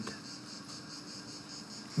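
Quiet room tone in a pause between spoken sentences: a steady, faint high-pitched hiss with no other events.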